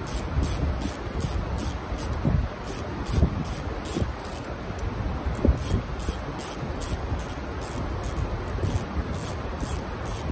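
Ratchet wrench clicking in quick runs, a few clicks a second, as the clamp on a turbocharger's compressor housing is tightened down.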